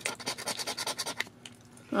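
A coin scratching the latex coating off a paper scratch-off lottery ticket, a quick run of rasping strokes for about a second that then fades and stops.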